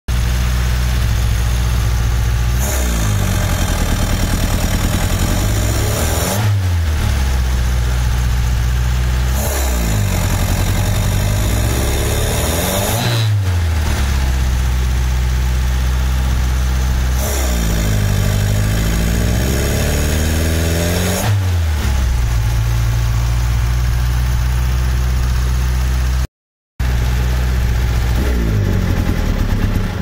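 Fiat car engine running with the air cleaner lid off its twin-choke carburettor, blipped up from idle about three times, each rev lasting a few seconds before falling back. This is the throttle test for the owner's fault: an initial loss of power on opening the throttle before the engine picks up again.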